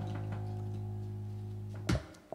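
Live band holding a final sustained chord on saxophone and electric keyboard, ended by one sharp accented hit near the end that cuts the music off: the close of the song.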